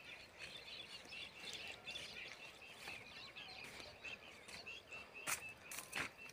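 Small birds chirping faintly and repeatedly in short notes, with two sharp clicks near the end.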